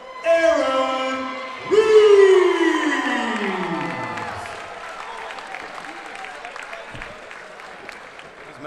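Ring announcer's amplified voice drawing out the winning fighter's name in long held notes, the last one sliding down in pitch over about two and a half seconds. Crowd cheering and applause follow in a large hall.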